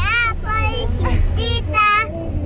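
A young girl singing in a high voice, holding a long note near the end, over the steady low rumble of the car cabin.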